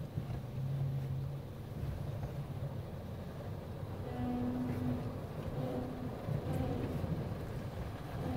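Steady low rumble of an automatic touchless car wash's spray gantry and water jets, muffled through the car body as heard from inside the cabin, with a few short faint hums near the middle.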